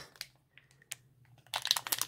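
A few faint clicks, then, from about one and a half seconds in, the crinkling of a sealed Topps fat pack's plastic wrapper as it is picked up and handled.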